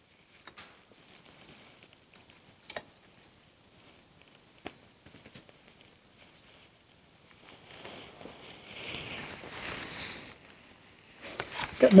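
Molten aluminium being poured into a Petrobond oil-bonded sand mould: a few scattered sharp clicks, then a soft hiss and crackle for about three seconds as the hot metal fills the mould and burns off the oil in the sand.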